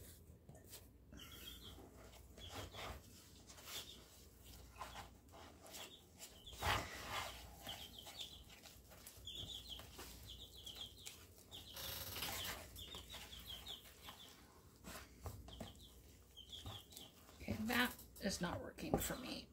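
Spatula stirring pancake batter in a plastic bowl: faint scraping and squishing with occasional knocks against the bowl. Short, high chirp-like squeaks come and go in small clusters.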